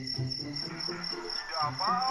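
Crickets chirping in an even, high-pitched pulse about four times a second, over soft background music with low repeating notes. A short wavering tone rises and falls near the end.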